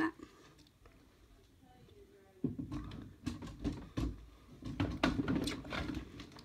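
Handling noise close to the microphone: a near-quiet start, then from about two and a half seconds in a run of soft knocks, clicks and rustling as plastic cage items are moved around in the bedding.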